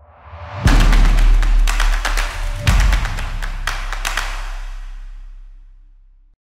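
Short outro music: a rising swell into a heavy percussive hit with deep bass about half a second in, a second hit about two seconds later, and a few lighter hits before it fades out slowly.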